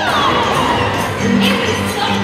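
Crowd of young children shouting and cheering, with music playing.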